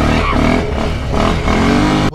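Quad bike (ATV) engine revving as the bike turns and pulls away. Its pitch rises near the start and again near the end, over a steady rush of noise.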